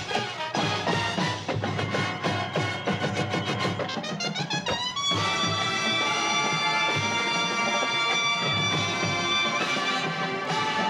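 A marching band's brass and drums playing a rhythmic, punchy passage. About five seconds in, a quick rising run leads into a long held brass chord.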